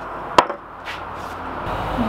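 A wooden moulding flask knocking against a wooden moulding board: one sharp wooden knock about half a second in, then a fainter tap.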